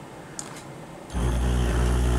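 Servo motor breaking into a steady buzzing hum about a second in, rich in overtones: with the loop gain turned up very high, the control loop is oscillating at a high frequency, which is typical of high-frequency vibration.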